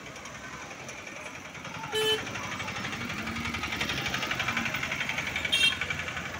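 Small engine of a passing auto-rickshaw running with a fast rattle that grows louder in the second half, with two short vehicle horn beeps, one about two seconds in and one near the end.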